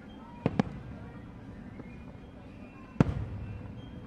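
Aerial fireworks shells bursting: a quick double bang about half a second in, then a single louder bang at about three seconds that echoes away over the next second.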